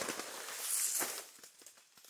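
Light rustling and crackling of dry vegetation, with a soft knock about a second in, dying away to near quiet in the second half.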